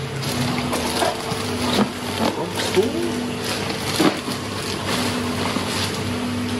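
Plastic bags crinkling and rustling as bagged corals are handled in a plastic-lined foam shipping box, with a couple of sharper crackles, one about two seconds in and a louder one about four seconds in.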